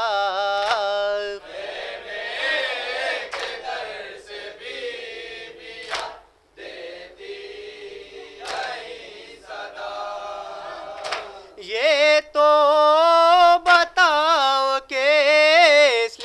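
Unaccompanied Urdu noha, a Muharram lament, sung by male reciters. A solo voice opens, a quieter group chant answers in the middle with a few sharp slaps, and from about twelve seconds in a solo voice returns, louder.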